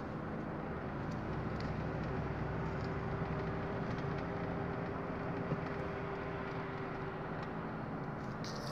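Car engine and tyre noise heard from inside the cabin while driving at moderate speed, a steady low hum with no change in pitch.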